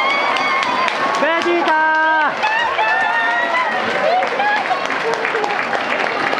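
Boxing crowd shouting and cheering, many voices calling out at once, with a long drawn-out shout lasting about a second starting about a second in.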